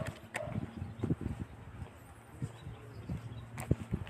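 Irregular low thumps and knocks with a few sharp clicks: footfalls and handling noise on a handheld phone's microphone carried on foot.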